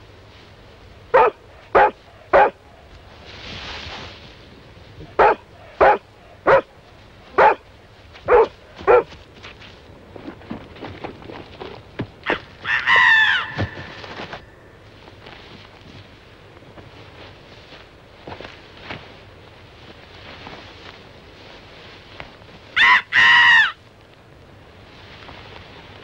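A dog barking in short single barks, about nine in the first nine seconds. Later come two longer, wavering pitched calls, one about thirteen seconds in and one near the end.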